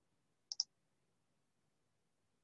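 A quick double click, two sharp clicks a fraction of a second apart about half a second in, the second slightly louder, over otherwise near silence.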